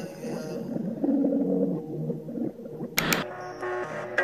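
Background music of an edited video, muffled and low for about three seconds, then a sharp hit as the music comes back in clearly with steady notes.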